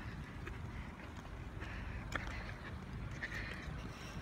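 Low, steady rumble of a handheld phone microphone carried while walking, with a few faint taps that fit footsteps.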